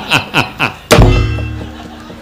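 A man's rhythmic staccato laughter trails off, then just under a second in comes a single loud, sharp knock with a low boom, followed by faint, even ticking and ringing tones of the accompaniment.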